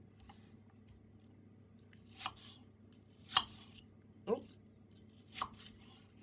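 Kitchen knife cutting through a peeled apple onto a chopping board, dicing it into cubes. Four separate sharp cuts, about a second apart, beginning about two seconds in.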